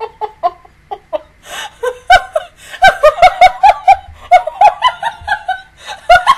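A woman laughing hard in high-pitched, rhythmic bursts, several a second, part of it muffled behind her hand; the laughter thins out about a second in, then picks up again strongly.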